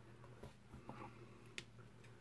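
Near silence: room tone with a low steady hum and a faint click about one and a half seconds in.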